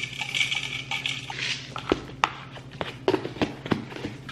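Dry rolled oats poured from a canister into a plastic container: a steady pattering hiss that stops about a second in. Then several sharp knocks and clicks as containers are handled and set down, over a steady low hum.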